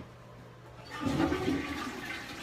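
Toilet flushing: a rush of water starts about a second in and carries on.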